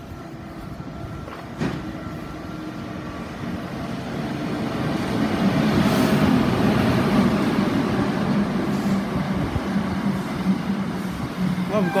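Greater Anglia intercity train running in alongside the platform. Its rumble and wheel noise build from about four seconds in as the train draws close, with a steady low hum under them.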